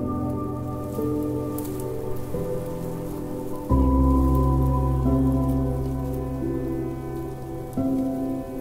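Slow, sad piano music of held chords, a new chord with deep bass striking at about four seconds, over a layer of steady rain sound.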